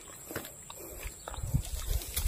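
Footsteps and rustling through grass with low thumps of a handheld camera being moved, heavier in the second half.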